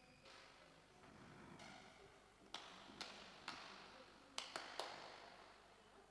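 Six sharp knocks on a hard surface, echoing in a large hall: three evenly spaced about half a second apart, then three more in quick succession about a second later.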